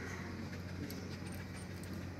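A German shepherd and a small street dog playing, with faint clinks of the shepherd's metal chain lead over a steady low hum.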